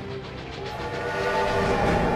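Steam locomotive passing close, the rush of the train growing louder, with its whistle sounding from about half a second in.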